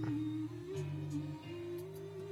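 Music: a song with a long held vocal line over steady bass notes, played from the rear-view monitor's media player and heard through the car stereo's speakers by way of the monitor's FM transmitter.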